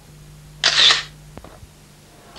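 A short swoosh of noise, under half a second long, about half a second in, used as a station-logo transition effect. Beneath it runs a low steady hum that ends with a faint click partway through.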